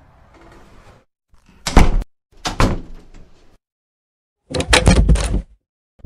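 Metal grille door being worked by hand: a sharp clank about two seconds in, a shorter clatter after it, then a longer rattling clatter of the bars and latch near the end.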